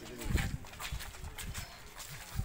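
Indistinct voices of people talking, broken by several low thumps, the loudest about a third of a second in.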